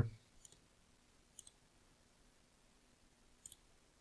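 Faint computer mouse clicks, three short clicks spread across a few seconds of otherwise quiet room tone.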